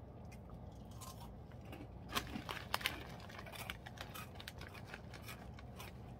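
Close-miked chewing of a crunchy chicken-flavoured snack: a run of short, crisp crunches, with a few sharper, louder ones about two to three seconds in.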